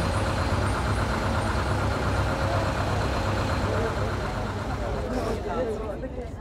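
Steady low engine rumble heard from inside a moving bus cabin, with faint voices of other passengers now and then.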